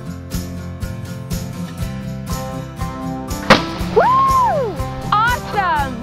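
Strummed acoustic guitar music with a steady beat. About three and a half seconds in, a sharp loud pop as the dry ice pressure in the 2-liter bottle blows the cork out and the rocket launches. After it come whistling tones that rise and fall.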